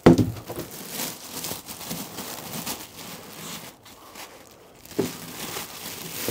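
Clear plastic bag crinkling and rustling as the stainless steel furnace wrapped in it is handled. There is a sharp knock at the very start as the furnace is set down on a wooden table, and another about five seconds in.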